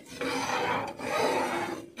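A metal ladle scraping across the bottom of a pan as it stirs a thick, thickening maja blanca corn pudding: two long scraping strokes, each a little under a second.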